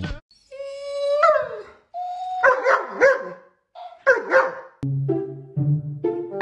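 A run of drawn-out, whining animal calls that bend in pitch, the first about a second long and falling at its end. Music with steady low notes comes in near the end.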